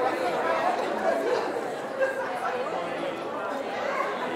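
Congregation chatting as people greet one another: many voices talking at once in a large church sanctuary, a steady hubbub with no single voice standing out.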